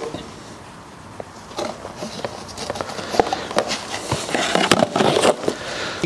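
Unpacking noises: plastic packaging and small bags rustling and crinkling, with light clicks and knocks as accessories are handled on a table. It starts faint and gets busier over the last few seconds.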